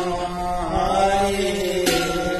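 A devotional nam-prasanga chant: one voice sings a long, sliding melodic line over a steady low drone. Near the end there is a single clash of large brass cymbals (bhortal).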